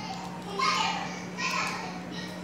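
Two little girls arguing in Korean in high-pitched child voices, played back from a video through room loudspeakers, over a steady low hum.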